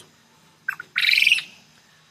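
A bird calling: a short high chirp a little after half a second in, then one loud, high call lasting under half a second about a second in.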